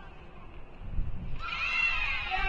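A dull thump about a second in, then a high-pitched voice calling out from about a second and a half in, its pitch bending up and down.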